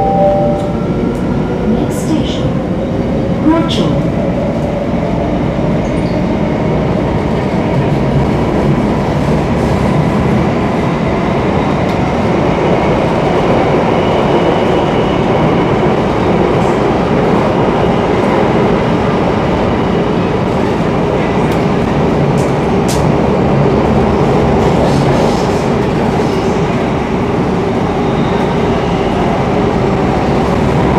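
Metro train running through a tunnel, heard from inside the carriage: a steady loud rumble and rush of wheels on rails, with a rising motor whine over the first few seconds as it gathers speed.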